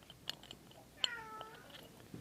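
Light metal clicks from a thin pick and small steel micro jet engine parts being handled. About a second in there is a short pitched squeak that dips and then holds for about half a second.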